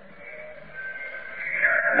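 A pause in a man's lecture with faint background, then near the end his voice rises into a long, drawn-out, wavering word.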